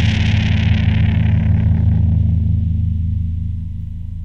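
A final heavy-metal chord on distorted guitars and bass, held and ringing out, with a cymbal wash that fades away over the second half as the whole chord slowly dies down.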